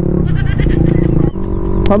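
Suzuki Raider Fi 150's single-cylinder engine pulling hard under acceleration; the engine note breaks off abruptly about a second and a half in and picks up again with a changed pitch.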